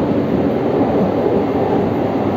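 Steady low rumble of the Sunrise Izumo sleeper train (JR 285 series electric multiple unit) running, heard inside a carriage.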